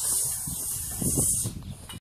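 Cicadas buzzing in a high, steady hiss that cuts off suddenly about a second and a half in, over a low rumble.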